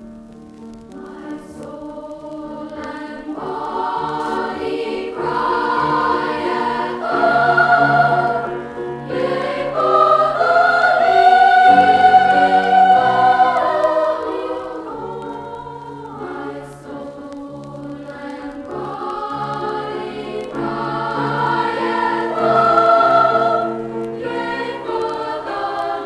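School glee club choir singing, from a vintage vinyl LP. The voices swell to their loudest about halfway through, ease off, then build again near the end.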